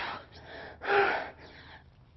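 A woman breathing hard from exertion during burpees: a heavy breath at the start, then a louder gasp with a little voice in it about a second in.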